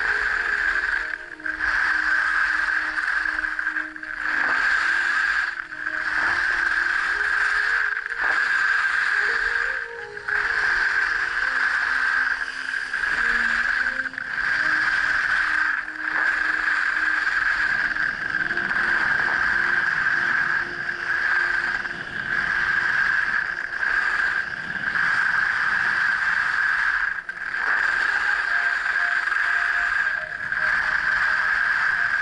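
Skis scraping over hard groomed snow during a fast descent: a steady loud hiss that dips briefly every two to three seconds as the skier changes turns.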